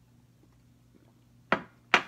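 A faint steady low hum, then near the end two sharp knocks about half a second apart: a mug being set down on a table after a drink.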